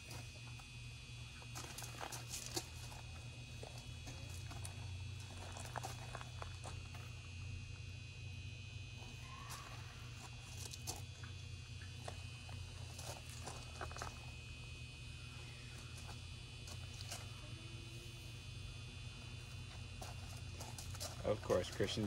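Quiet outdoor background: a steady low hum and a faint, steady high-pitched drone, with scattered light taps and scuffs. A child's voice comes in near the end.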